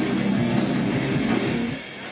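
Live rock band playing through a PA at an outdoor stage, with electric guitar and drums. Near the end the music drops away sharply, as in a break in the song.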